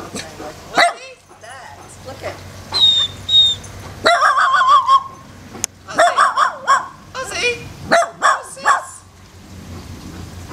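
Small dog barking in several separate bouts, short sharp barks with one longer call a little after four seconds in.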